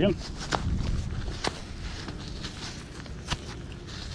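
Gloved fingers rubbing and scraping grit off a small dug-up metal ring: a scatter of small, irregular clicks and scratches.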